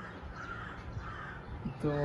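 A few faint crow caws in the background, over low room noise.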